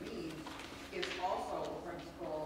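A person speaking faintly and off-microphone, the words indistinct: an answer from the pews during a group discussion.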